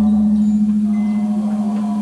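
A deep struck bell tone from the trailer's score, ringing on and slowly fading, with fainter higher metallic overtones shimmering above the low note.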